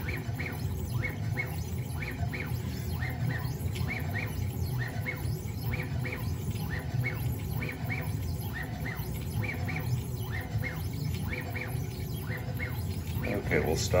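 Onefinity CNC's stepper motors driving the gantry and router head through an air carve at a raised max jerk setting of 5,000: a steady low hum broken by short chirping whines, two or three a second, as the axes change direction quickly.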